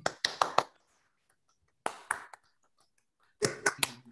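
Scattered hand claps heard over a video call: a quick run of a few claps at the start, one about two seconds in, and a few more near the end.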